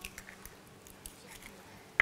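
A hen's egg being pulled open by hand over a bowl of flour: a few faint small crackles of the shell as the egg drops in.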